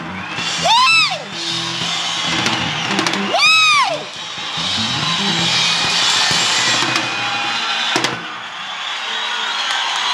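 Live salsa band playing under a cheering concert audience, with two loud rising-and-falling whoops, about one second in and about three and a half seconds in.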